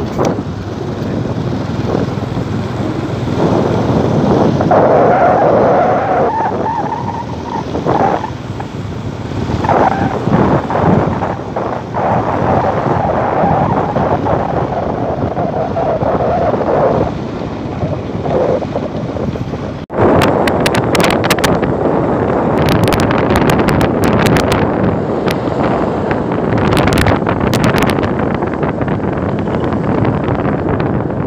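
Wind rushing and buffeting over the microphone of a phone riding on a moving motor scooter, with the vehicle's running noise underneath. About two-thirds through, the sound cuts abruptly to a louder, gustier stretch full of sharp crackles.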